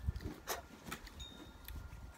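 Quiet outdoor background: a low rumble with a few short sharp clicks and faint thin high ringing tones.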